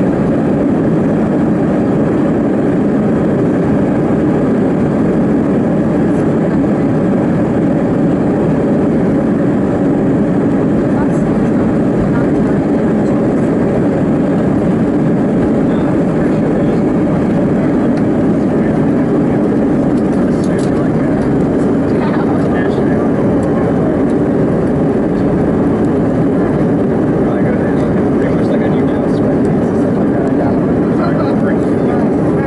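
Airliner's jet engines at takeoff power heard from inside the cabin, a loud steady noise as the plane runs down the runway and lifts off in the second half.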